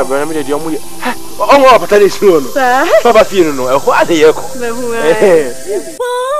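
A person's voice sliding up and down in pitch in long swoops, without clear words, over quieter background music.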